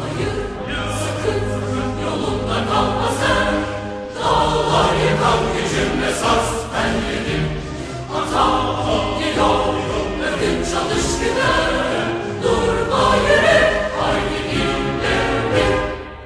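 A Turkish military wind band playing a march while a choir sings the Turkish lyrics.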